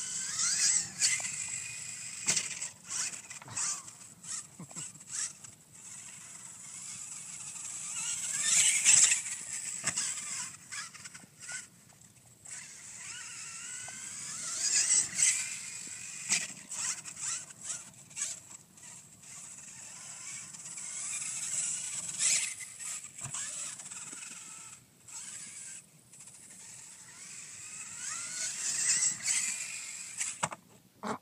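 Brushless Losi LST 2 RC monster truck's electric motor and drivetrain whining, the pitch gliding up and down as the throttle is punched, with about five louder full-throttle bursts.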